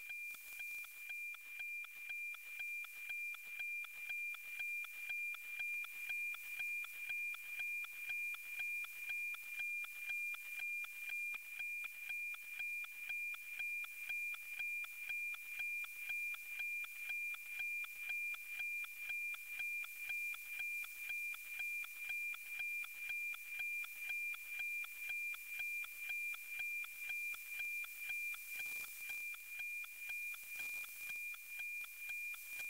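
NOAA 19 weather satellite's APT picture signal at 137.1 MHz, received on an RTL-SDR and played as demodulated audio: a steady high tone with a tick-tock beat about twice a second over a little radio hiss. Each beat is one scanned line of the weather image.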